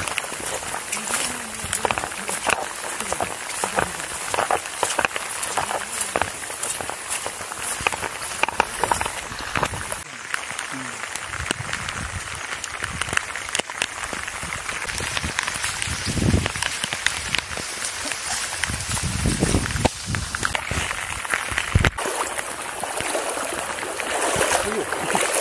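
Steady heavy rain, with many drops tapping close to the microphone, and a few low thumps in the second half.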